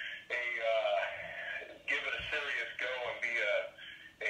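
A person talking in a thin, tinny voice with little bass, at the same level as the surrounding conversation.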